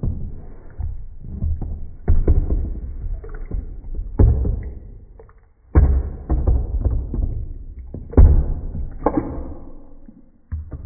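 Bathwater splashing and sloshing as a toy hippo and a glass dish are pushed through it. A run of irregular splashes and bumps comes every second or two, each dying away.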